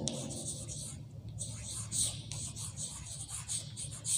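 Chalk writing on a blackboard: a run of short, quick chalk strokes as a word is written out.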